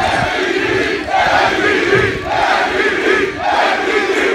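Large crowd chanting a two-syllable chant in unison, repeating about once a second.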